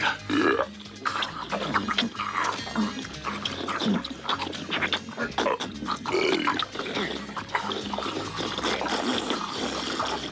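Two men eating noisily straight from wooden bowls without spoons: a run of irregular loud slurps and gulps, over quiet background music.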